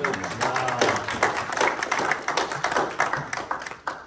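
Audience applauding: dense hand-clapping that dies away near the end.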